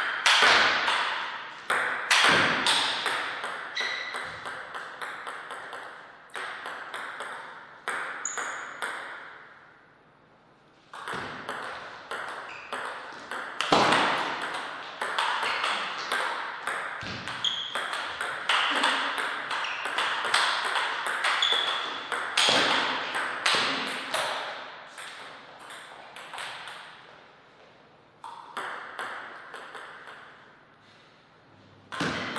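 Table tennis ball clicking sharply off paddles and the table in fast rallies, each hit with a short ring. The clicking stops for a moment near ten seconds, then resumes in another long run of hits, and thins out towards the end before a new run starts.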